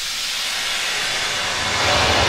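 Intro of a 1986 Italo-disco record: a steady hiss of noise swelling steadily louder, with a low bass beat coming in at the very end.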